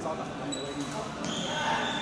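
Indoor sports-hall ambience: a murmur of background voices, with court shoes squeaking sharply on the court floor a few times as the badminton players move.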